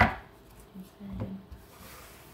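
Tarot cards being shuffled by hand: a sudden rasp of cards rubbing together that fades within a split second, then a softer rub about a second later.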